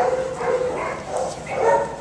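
A dog whining: one held note in the first half second, then another whine near the end.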